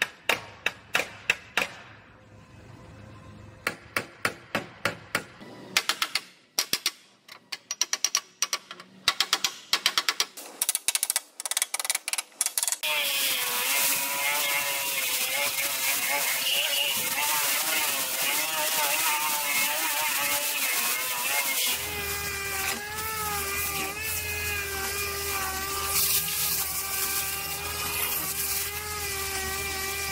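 Hammer tapping out the Jeep Wrangler's bent steel fender from behind, quick strikes in bursts with short pauses, straightening the metal. About 13 seconds in, a pneumatic disc grinder starts running on the fender with a wavering whine. About 22 seconds in the note steadies over a low hum as a dual-action air sander takes over.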